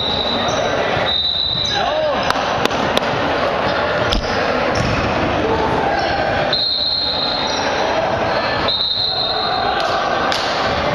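Basketball bouncing on a hardwood gym floor amid reverberant gym noise and players' voices, with a few sharp knocks about two to four seconds in. A high steady tone comes and goes through it.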